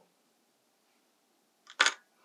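A paintbrush knocking against a ceramic palette: two quick clicks near the end, the second louder.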